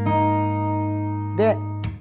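Fender American Acoustasonic Telecaster's steel strings fingerpicked with thumb, index and middle finger. A chord rings out and then stops sharply just before the end.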